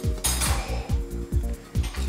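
A metal spoon scraping and clinking against a ceramic bowl while stirring melted chocolate, loudest shortly after the start, over background music with a steady beat.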